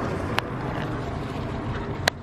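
Steady low rumble of road traffic, with one sharp click about half a second in.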